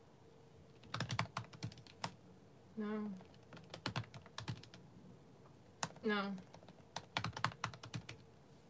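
Typing on a computer keyboard: three short bursts of key clicks, the first about a second in and the last near the end.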